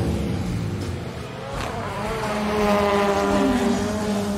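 Race-car engine sound effect, a steady engine note that dips slightly in level around the middle and then settles onto a lower steady note, with a brief falling glide, as paper toy cars are pushed along a table in a race.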